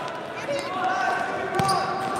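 Futsal being played on a hard indoor court: shoes squeaking, the ball thudding on the floor, and a sharp kick about a second and a half in, with voices shouting in the echoing hall.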